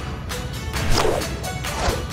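Two sharp whip-like whoosh sound effects, one about a second in and one near the end, over background music.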